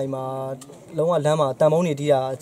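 A man speaking Burmese in a low voice, opening with a drawn-out hesitation sound before going on talking.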